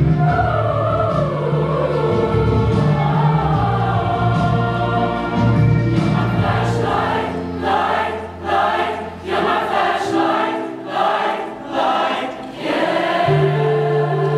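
A large choir singing in unison over a low sustained accompaniment. In the second half the voices sing short, separated phrases, and the low accompaniment drops out for a few seconds before returning just before the end.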